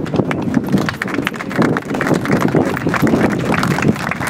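Small crowd applauding: many uneven, overlapping hand claps.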